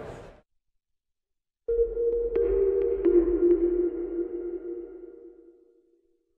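Short electronic logo sting for the production ident: a steady synth tone with a low rumble beneath and a few faint pings, starting suddenly about two seconds in and fading away near the end.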